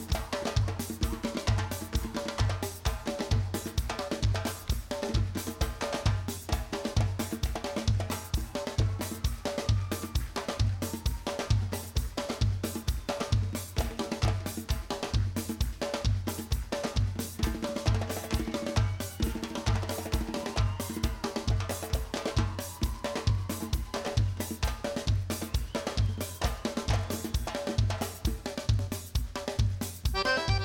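Live band's drum kit playing a steady, even beat, bass drum and snare with cymbals, over some held backing notes.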